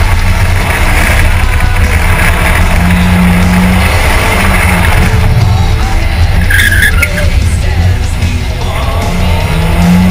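Toyota Corolla's 1.6-litre 4A-FE four-cylinder engine running hard with steady road and tyre noise through a slalom run, with a brief tyre squeal about six and a half seconds in as the car turns around a cone. Rock music plays underneath.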